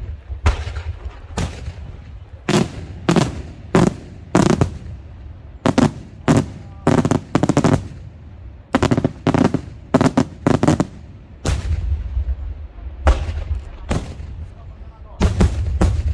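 Daytime aerial fireworks: a rapid series of loud shell bursts, the bangs coming several a second, often in quick clusters, over a low rumble. There is a short lull about two thirds of the way in, and a dense volley of reports near the end.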